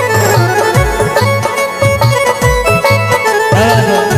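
Instrumental interlude of a folk devotional bhajan: a dholak playing a steady rhythm, its low bass strokes bending in pitch, under a melody of held notes.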